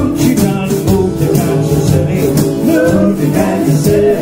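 Jug band playing live: strummed guitar and picked mandolin over a blown jug bass line, with a steady washboard rhythm.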